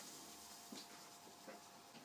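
Near silence: faint room tone with two small faint clicks.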